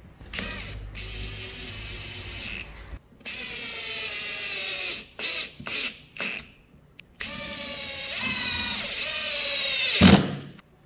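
Power drill-driver with a long Phillips bit driving wood screws into pre-drilled, countersunk holes in softwood. Its motor whines in runs of a few seconds as each screw goes in, with a few short trigger blips in the middle as a screw is seated. A loud knock comes right at the end.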